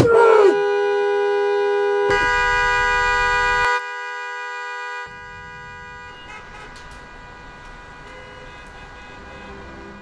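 Car horn sounding in one long steady tone, set off by the driver slumping onto the steering wheel. It comes on suddenly, drops in level twice and stops about six seconds in, leaving quieter traffic noise.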